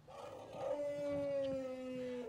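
Brass instruments in a scene-change music cue, playing two long held notes at once from about half a second in. The upper note sags slowly in pitch.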